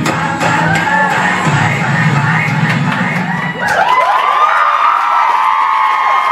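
A mashup of pop songs playing with a steady beat cuts out about three and a half seconds in. An audience then cheers and whoops.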